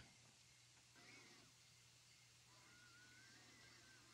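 Near silence: room tone with a low steady hum, and two very faint, thin high sounds, one about a second in and a longer, slightly wavering one near the end.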